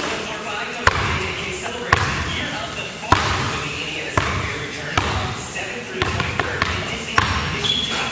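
Basketball bouncing on a hardwood gym floor, a sharp bounce about once a second, echoing in a large hall.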